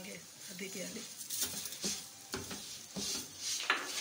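Wooden spatula scraping and stirring a thick coconut mixture in a non-stick frying pan in a series of short strokes, as sugar is added to it.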